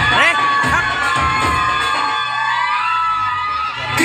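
A crowd of children cheering and shouting during a break in the dance music, with long drawn-out shouts; the music starts again at the end.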